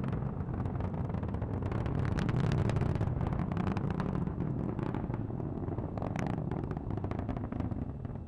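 Atlas V rocket's RD-180 first-stage engine heard from the ground during ascent: a steady low rumble with dense crackling.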